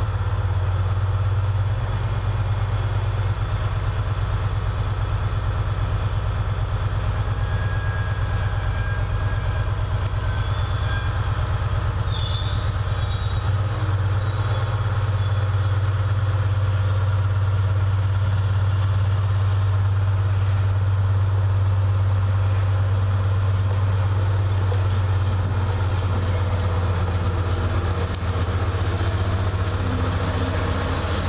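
Freightliner Class 70 diesel locomotive with its GE PowerHaul V16 engine running in a steady low drone. The note shifts about halfway through, as the locomotive starts to move its engineers' wagons.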